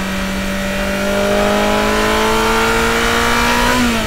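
A loud engine sound effect: a rushing noise with a pitch that climbs slowly and steadily, like an engine revving up, dipping just at the end.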